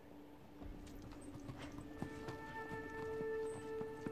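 Film trailer soundtrack: horse hooves clopping, with held music notes coming in about halfway through and the sound growing louder.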